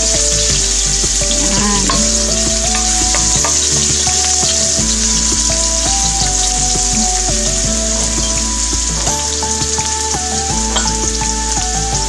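Ginger strips and bay leaves frying in hot cooking oil in a wok, giving a steady sizzle.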